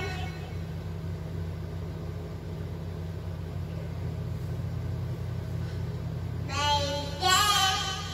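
A steady low hum, then about six and a half seconds in a toddler starts singing, two short phrases.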